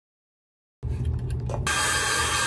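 Handheld hair dryer switched on about one and a half seconds in, running with a steady loud rushing hiss. Before it, a few clicks and low rumble follow a moment of dead silence.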